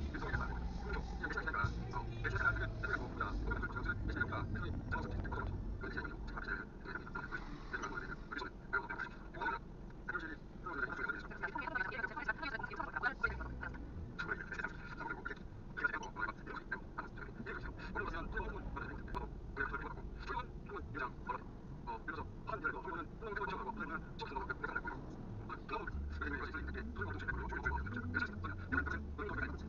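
Low, steady road and engine rumble inside a car cabin during slow driving in traffic, with a voice-like sound running over it throughout.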